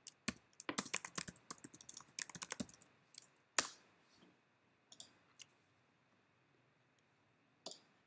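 Computer keyboard typing in quick runs for about three seconds, then a few scattered single clicks with quiet between them.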